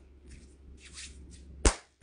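Hands rubbing and swishing in soft strokes close to the microphone, then one sharp hand slap near the end.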